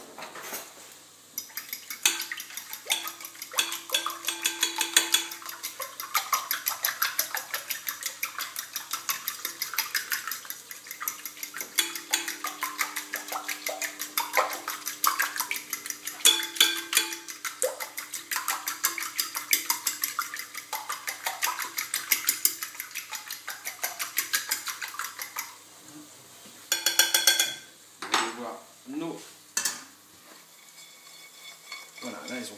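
Fork beating eggs and liquid cream in a glass bowl, the metal tines clicking rapidly against the glass at about four to five strokes a second, stopping about 25 seconds in. A short, louder clatter follows near the end.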